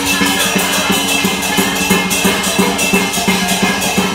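Chinese dragon dance percussion: a drum beaten in a fast, steady rhythm with ringing cymbals and gong.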